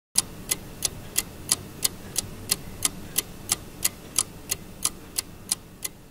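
Clock-like ticking, sharp and even, about three ticks a second, over a faint low hum.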